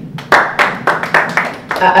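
Brief applause, hands clapping for about a second and a half, ending just as a woman starts to speak.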